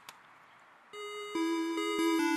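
A single click, then about a second in an electronic melody of plain, steady beeping notes starts and steps from pitch to pitch, like a ringtone or an old video game tune.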